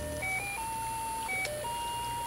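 A simple tune of plain, beep-like electronic notes played one at a time, stepping up and down like a toy's or music-box melody.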